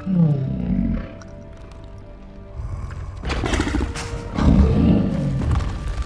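Movie-monster sound effect: a troll's deep roars over the orchestral film score, a short growl at the start and a longer, louder roar in the second half.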